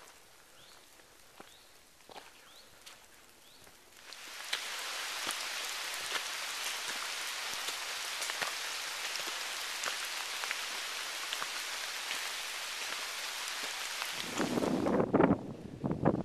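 Rain falling on forest foliage: sparse dripping ticks at first, then about four seconds in a sudden dense, steady hiss of rain with individual drops. Near the end it cuts off and loud gusts of wind buffet the microphone.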